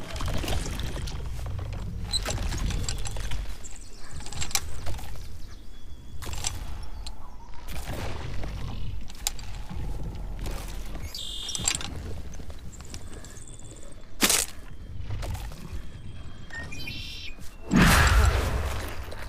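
Monster-film soundtrack: a low rumbling drone, with scattered sharp cracks and a sudden loud hit right at the end.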